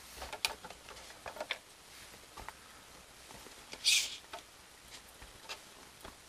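Handling noise from an RC monster truck and its knobby rubber tires on a wooden tabletop: scattered light clicks, taps and rubbing, with a short hissy rustle about four seconds in.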